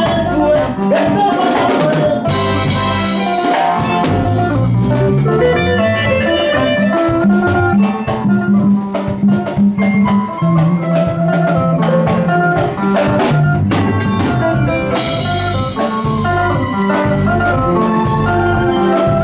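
A live band playing together: drum kit, electric bass and electric guitars in an upbeat groove, with a busy bass line under interlocking guitar lines. Cymbal crashes come about two seconds in and again near fifteen seconds, and the beat turns choppy with short breaks around eight to ten seconds.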